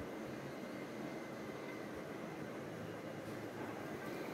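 Faint, steady hiss of background noise, with no distinct strokes or other sounds standing out.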